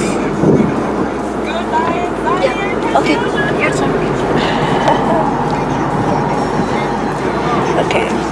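Steady road and engine noise inside a moving car's cabin, with faint voices over it.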